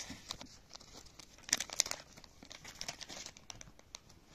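Metallised plastic bag crinkling in the hand as a cable adapter is taken out of it, a run of irregular crackles that is loudest about halfway through and dies away near the end.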